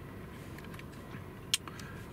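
Faint, steady car-cabin background with one sharp click about one and a half seconds in: a steering-wheel control button being pressed to page through the digital gauge-cluster display.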